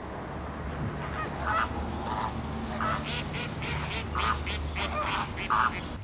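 A flock of flamingos calling: a run of about a dozen short, goose-like honks, starting about a second and a half in.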